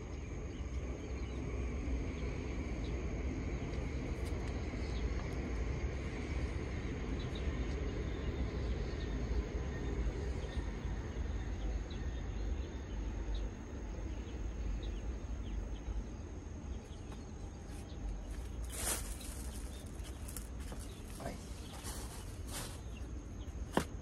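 Outdoor ambience: wind rumbling on the microphone, with a thin, steady high-pitched insect drone. A few sharp clicks and rustles come in the last five seconds.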